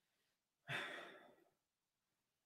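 A single breath by a man smelling a fragrance on his wrist, starting about two-thirds of a second in and fading over about half a second.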